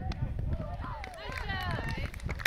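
Several voices calling and shouting from across a ballfield, wavering and overlapping, growing stronger in the second half, over a steady low rumble of wind on the microphone.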